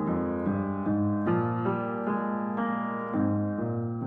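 Upright piano played: a line of single notes, about two a second, each struck and left to ring over a held low bass note.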